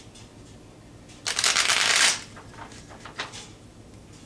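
A deck of tarot cards being shuffled by hand: one loud, rapid run of flicking cards lasting just under a second, about a second in, followed by a few softer taps of the cards.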